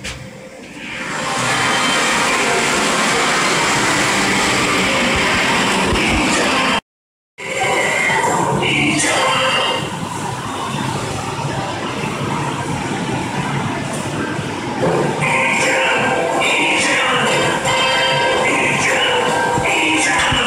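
Loud pachinko-parlour din, music over a busy clatter of machines, swelling in suddenly about a second in as the elevator doors open onto the floor. It cuts out briefly near the middle, then carries on with a melody standing out near the end.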